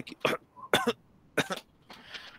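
A man coughing and clearing his throat into a headset microphone: three short separate coughs about half a second apart.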